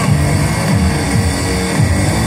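Live electronic music played loud over an arena sound system, heard from among the audience, with a heavy bass synth line sliding up and down in pitch.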